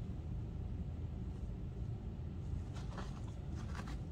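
Faint rustling of shredded paper bedding and a bait cup handled by gloved hands in a worm bin, with a few soft crinkles in the last second or so, over a steady low hum.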